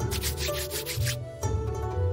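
A pair of wooden chopsticks rubbed briskly against each other: a quick run of dry scraping strokes in the first second, over background music.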